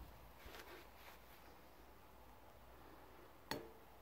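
Near silence, broken once by a short, light clink about three and a half seconds in: the plastic cup touching the china plate.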